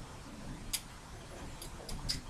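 A few faint computer mouse clicks: one near the middle and a quick pair near the end, over a low background hum.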